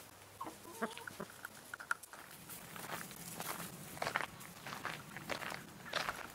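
Domestic hens clucking with a short wavering call about half a second in, followed by a run of short scratchy, rustling noises.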